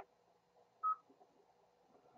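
A single short electronic beep from a ham radio receiver, a moment after a station finishes its check-in call: a courtesy tone marking the end of the transmission, over faint receiver hiss.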